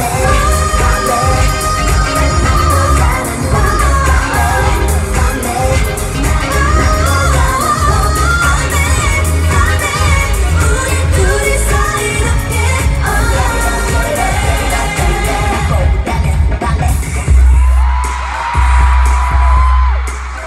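Live K-pop song played loud through an arena sound system: female vocals singing over a pop backing track with heavy bass, picked up from the audience. Near the end the singing stops and one long held note sounds over pulsing bass.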